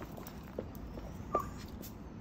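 A small dog playing on concrete: faint scuffling, a short tap about half a second in, and a louder brief sound with a short high squeak about a second and a half in.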